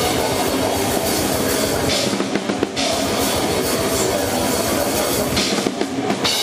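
A metal band playing loud and dense, heard close to the drum kit, which is struck hard throughout. Bursts of cymbal wash about two seconds in and again near the end.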